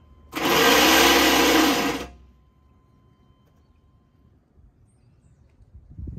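Starter motor cranking a 6.5-litre diesel engine for about two seconds, its whir wavering in pitch, while starting fluid is sprayed into the intake. The cranking stops suddenly without the engine firing.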